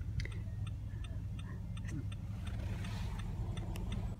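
Car turn signal ticking steadily, with evenly spaced clicks, over the low steady hum of the engine and road inside the car's cabin.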